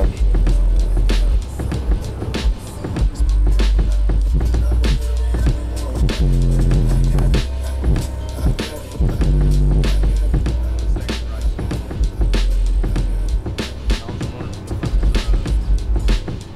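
Car stereo subwoofers playing bass-heavy music at high volume, heard inside the car; very deep bass notes held in long stretches with short breaks under a sharp, regular beat.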